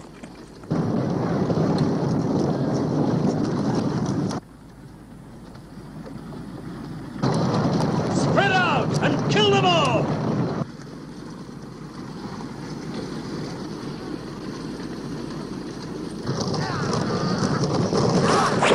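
Battle din: a dense rushing noise of a fighting crowd that cuts in and out in loud stretches, with yelled cries about eight to ten seconds in.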